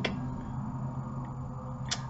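A pause between speech in a small room, holding only a steady low background hum. A brief click comes near the end.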